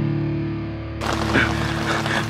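Distorted electric guitar chord held and slowly fading. About halfway through it gives way abruptly to a hiss of background noise with a brief faint voice.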